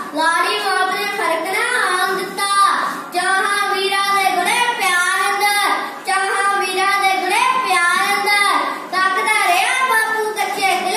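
A young boy reciting a Punjabi poem in a loud, sing-song chanting voice, in lines of about three seconds each with short breaths between them.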